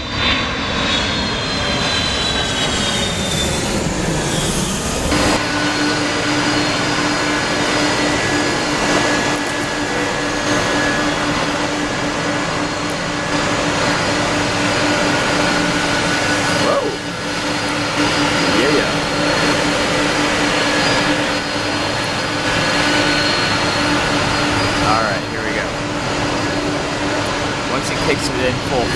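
A Boeing 757 on final approach passes close, its jet engine whine falling in pitch. About five seconds in, the sound switches abruptly to the steady whine and roar of jet airliners, among them a Boeing 767, rolling on a wet runway.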